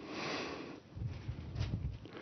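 A man drawing a breath in through his nose, a sniff in a pause between sentences, with faint movement noise and a small click near the end.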